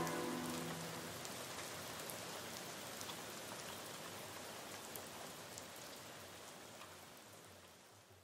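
The tail of a recorded R&B song: the music fades out in the first second, leaving a faint rain-like hiss with scattered crackles that dies away over several seconds into near silence.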